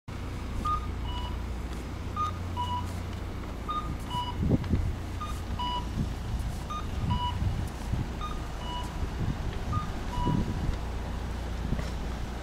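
Japanese pedestrian crossing signal playing its two-note cuckoo-style chime, a high beep then a lower one, about every one and a half seconds while the crossing light is green; it stops near the end. A low, steady traffic rumble runs beneath.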